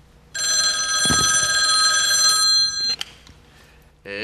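Corded landline telephone ringing: one steady multi-tone ring lasting about two and a half seconds, which stops just before a click.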